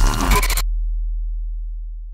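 Electronic music ending a logo sting: a short burst of glitchy, crackling digital noise cuts off about half a second in, leaving a deep bass tone that slowly fades away.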